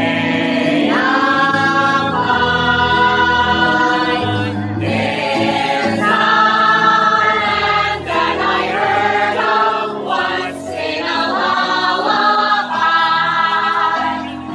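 A group of singers doing a vocal warm-up together, singing held notes that move up and down in steps.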